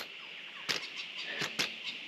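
A young boy making small noises beside the camera: a few short sounds about two-thirds of a second and a second and a half in, over a faint steady high hum.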